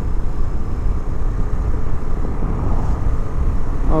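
Motorcycle running on the road, heard from the rider's own bike as a steady low rumble with no clear tones.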